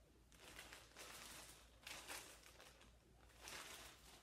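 Near silence with faint, brief rustling of a sealed plastic bag being handled and set down.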